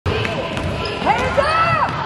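A basketball being dribbled on a hardwood gym floor, with low thuds of the bounces, and a spectator's voice calling out over it in the second half.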